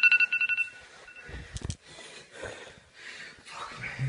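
Electronic timer alarm beeping rapidly in two high tones for under a second, marking the end of the timed set. Then a few knocks and rustling as the phone filming is handled.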